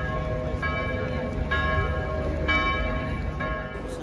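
Church bells ringing, with a fresh strike about once a second and each stroke ringing on. Low outdoor crowd and traffic noise lies under them.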